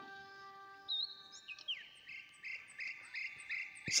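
Faint background music: held notes die away in the first second or so, then a run of short, evenly repeated high chirps, about three a second, with a few sliding notes above them.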